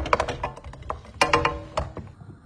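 Wooden spoon stirring and knocking against a metal frying pan: a run of sharp clacks, one of which, a little past halfway, leaves the pan ringing briefly.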